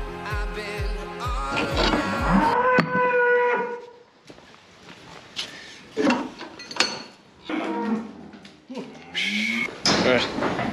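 Background music with a steady beat stops about two seconds in, as a cow moos once in a long call of about a second and a half. Quieter scattered sounds and a few sharp knocks follow.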